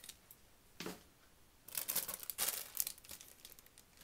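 A clear plastic bag of reindeer moss crinkling as it is picked up and handled, a run of rustles starting a little under two seconds in.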